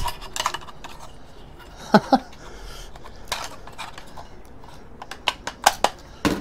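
Scattered clicks and clatter of a laptop-size hard drive in its metal bracket being worked loose and lifted out of a small aluminium-and-plastic PC case, with a quick run of sharp clicks near the end.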